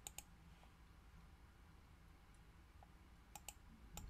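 Near silence: faint room tone with a few short, faint clicks, two right at the start and two more a little after three seconds in.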